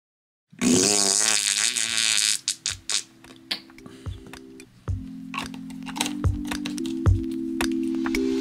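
A squelching squirt as gel is squeezed from a plastic bottle, followed by a string of sharp plastic clicks and taps as the bottles are handled, over steady held music notes.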